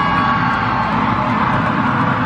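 Music playing through a stadium sound system over the steady noise of a large crowd. A few held high tones fade out about a second in.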